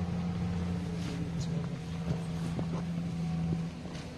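Truck engine running with a steady low drone as the truck pulls away, cutting off shortly before the end, with a few faint knocks in between.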